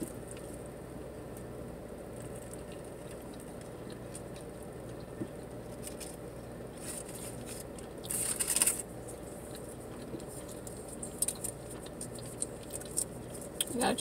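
Paper food wrapper rustling and crinkling while food is chewed, with a louder burst of crinkling about eight seconds in and small clicks near the end, over a steady low hum.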